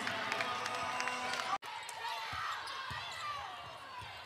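Live game sound from a basketball arena: a basketball bouncing on the hardwood court over a background of crowd voices. The sound cuts off abruptly for an instant about a second and a half in at an edit, then the same court ambience resumes.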